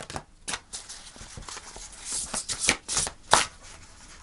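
A chunky deck of oracle cards being shuffled by hand: irregular rustling and short clicks of cards knocking together, the sharpest a little past three seconds in.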